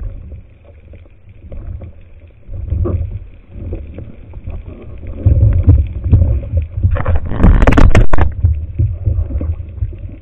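Water sloshing and rumbling against an underwater camera housing while a speared gilt-head bream is handled in front of it, with scattered knocks. It swells around two-thirds of the way through into a louder rush lasting about a second.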